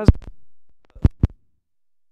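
Loud low thumps from a headset microphone: one as a word ends, then two close together about a second in. Then the sound cuts out to dead silence, a microphone glitch that nobody is handling.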